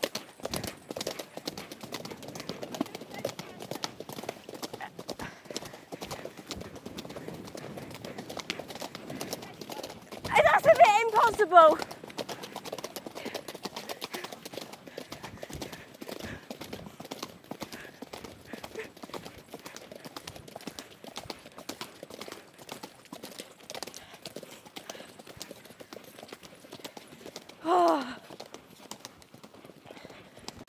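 Hooves of a ridden pony clattering steadily and quickly on a loose gravel track. A loud, wavering voice breaks in about ten seconds in, and briefly again near the end.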